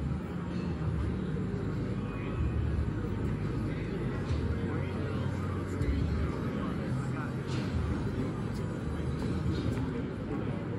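Indistinct chatter of many people in a large exhibition hall, over a steady low hum of hall noise.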